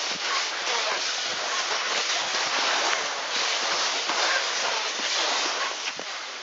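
Skis gliding over glacier snow, a steady hissing scrape with small swells as they slide.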